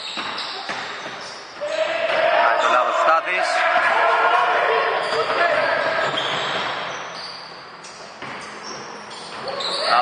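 A basketball being dribbled on a hardwood gym floor, echoing in a large hall. Voices are loudest from about two seconds in until about seven seconds.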